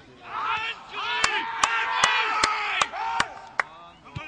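Football spectators shouting and chanting, with a run of seven sharp, evenly spaced claps at about two and a half a second.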